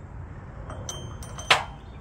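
A single sharp metallic clink about one and a half seconds in, a steel bolt being set into a bolt hole of a removed crankshaft pulley. A faint brief ring of metal comes just before it.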